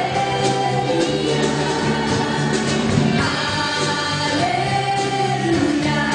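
Live church worship band playing a gospel-style song: several voices singing sustained notes over drum kit and electric guitar, with drum hits keeping a steady beat.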